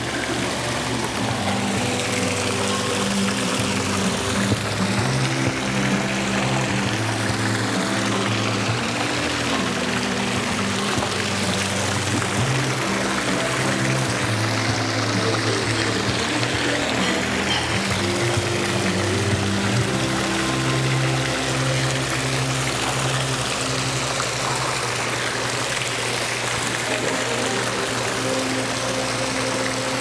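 Indoor fountain water falling and splashing steadily, with background music of long held notes playing under it.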